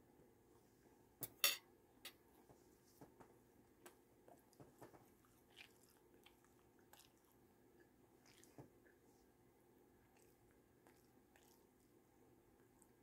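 A person chewing a mouthful of fried potato rounds (tater-tot style): faint, irregular mouth clicks and soft crunches. Two sharper clicks come about a second and a half in, and the chewing thins out over the last few seconds.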